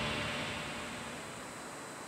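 The end of a TV news section's title sting: the theme music's swell fades out steadily into a noisy tail.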